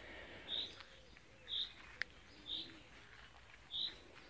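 A bird repeating a single short, high call about once a second, faint against garden background, with one sharp click about halfway through.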